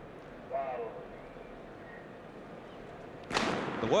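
A single starter's pistol shot about three seconds in, starting the race, after a stretch of quiet stadium background.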